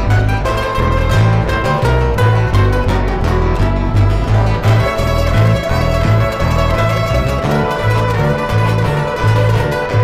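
Live acoustic band playing an instrumental Romanian folk tune: violin over acoustic guitars, with a double bass keeping a steady rhythmic bass line.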